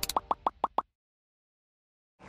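A quick run of five short, pitched pop sound effects, one after another within about a second.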